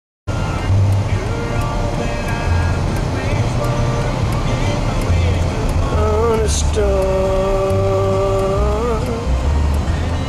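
Low rumble of a car driving on a highway, heard from inside the car, with a melody of long held notes over it, the longest held for about two seconds near the end.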